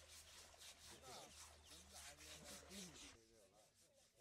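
Rhythmic scrubbing of an elephant's hide during its river bath, about three to four rasping strokes a second, stopping abruptly about three seconds in.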